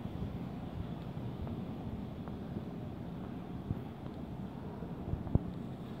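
Steady low background rumble with a few faint taps of footsteps on a tiled walkway.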